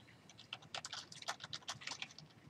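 Computer keyboard typing: a quick, irregular run of keystrokes, starting about half a second in.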